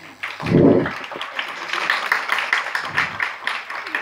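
Audience applauding: many hands clapping in a steady patter, with a brief louder low sound about half a second in.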